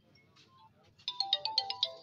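A mobile phone ringtone: a quick electronic melody of short stepped notes, starting about a second in.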